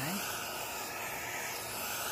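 Steady hiss of a dental high-volume evacuator sucking air and water from a patient's mouth.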